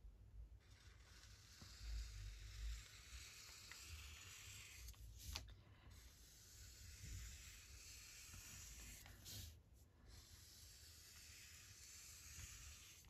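Near silence, with the faint scratch of an alcohol marker's fine tip drawing long lines on tracing paper, pausing briefly about five and a half and ten seconds in.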